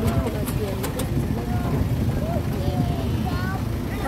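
An automatic motor scooter's engine running low and steady as it rides slowly toward the microphone, under people's voices talking and calling out.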